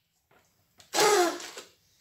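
One short, breathy blast about a second in, from a child blowing into a party-blower whistle toy; it fades out within about half a second.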